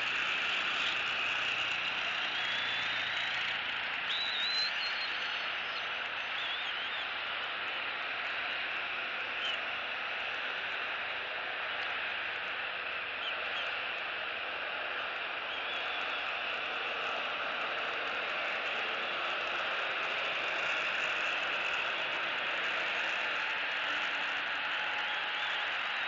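Steady outdoor background hiss with a few faint, short, high whistled bird calls in the first several seconds and once more about midway.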